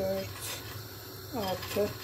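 A woman speaking briefly in Turkish, two short bursts of speech with a pause between, over a faint steady low hum.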